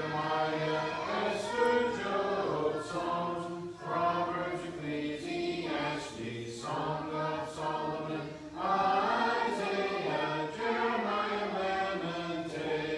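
A group of children's voices in unison, chanting the books of the Old Testament in a sing-song rhythm, phrase after phrase with short breaks between.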